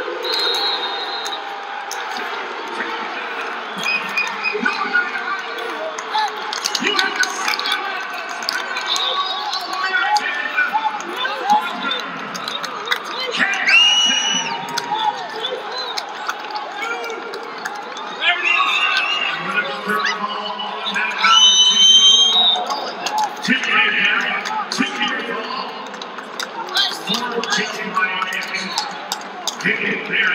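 Scattered shouting and calling from coaches and onlookers during a college wrestling bout, with no single clear voice, and the loudest yells about 14 and 22 seconds in. Faint clicks and thuds from the mat run underneath.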